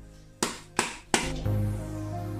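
A hammer knocks a coconut shell three times, about a third of a second apart, to crack it open. Background music with a steady low tone comes in just after the last knock.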